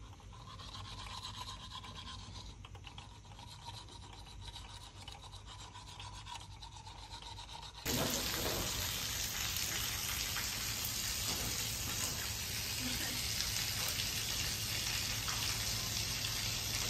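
Heavy rain falling: faint at first, then from about eight seconds in a much louder, steady hiss.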